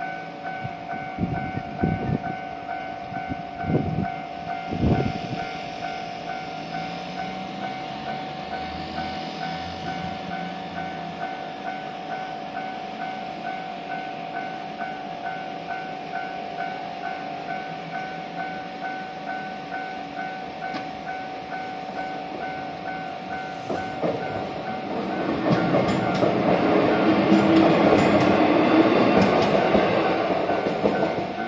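Japanese level-crossing alarm bell ringing steadily in a rapid repeating pattern, with a few dull thumps in the first five seconds. From about 24 seconds a Shizuoka Railway A3000 series electric train approaches and runs into the crossing, growing loud with sharp clicks from the wheels on the rails.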